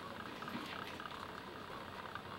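Quiet hall room tone: a steady low hiss with faint scattered ticks and rustles.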